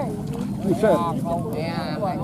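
Voices of several people talking and calling out to each other, over a steady low outdoor background.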